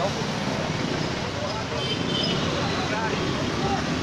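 Steady road traffic noise in a busy street, with indistinct voices of people nearby in the background.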